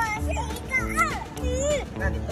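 A young child's high-pitched voice calling out in short, sharply gliding exclamations over background music with a steady bass.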